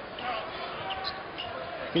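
Televised basketball game sound: steady arena crowd noise with a ball being dribbled on the court and faint commentary underneath.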